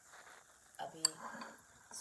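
A drinking glass clinks once, sharply, about a second in, with a fainter tick near the end.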